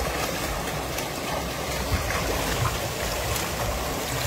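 Shallow river water rushing steadily over rocks, with a few light splashes from people washing in it.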